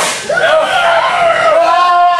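A sharp crack at the start, then children in the crowd shouting, one voice holding a long high yell near the end.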